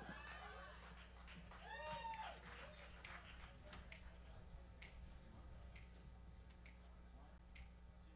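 Near silence, with two faint rising-and-falling voice calls in the first two seconds, then faint sharp ticks at a steady pace of about one a second from about three seconds in, keeping time just before the band starts.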